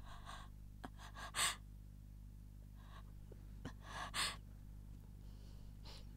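A woman's gasping, sobbing breaths in several short bursts, the strongest about a second and a half in and again about four seconds in, over a steady low hum.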